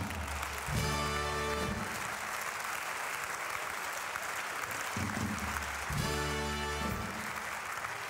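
Carnival audience applauding steadily, while a band plays a short held chord twice, about a second in and again in the second half: a carnival Tusch that marks the punchline.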